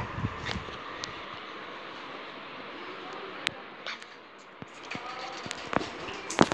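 Quiet steady room noise with a few scattered light clicks and taps.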